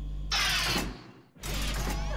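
A short rattling, clicking sound effect that fades away about a second in, followed after a brief hush by a low steady hum.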